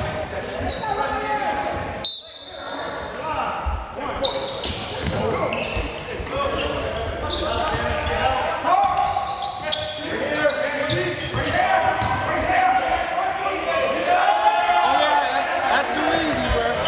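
Basketball game in a gymnasium: a ball being dribbled on the hardwood court amid players and spectators calling out, all echoing in the large hall.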